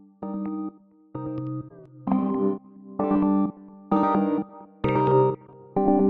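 Synth lead melody of short, held chords, about one a second, played through Waves Brauer Motion's stereo motion presets. The chords grow louder and brighter from about two seconds in.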